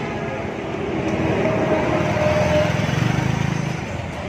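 A motor vehicle engine running steadily, swelling in the middle and easing off near the end, as if passing by.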